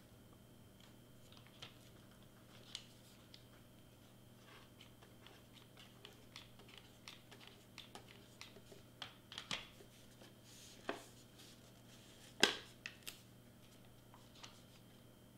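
Quiet scattered clicks and taps from a hot glue gun and a paper-wrapped Pringles can being handled on a craft mat, coming more often in the second half, with one sharper click near the end.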